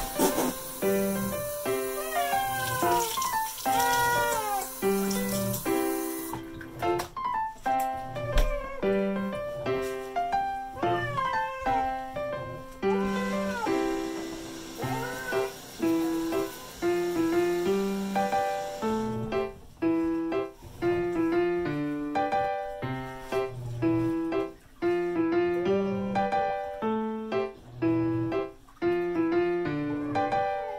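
Background piano music, with a cat meowing now and then over it: a wet cat that dislikes baths, protesting while it is washed and towel-dried.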